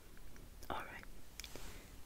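A soft, breathy whisper-like sound from a person close to the microphone about two-thirds of a second in, then a single small click.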